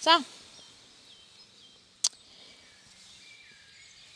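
A short spoken word, then a quiet indoor arena with faint high chirping tones and one sharp click about two seconds in.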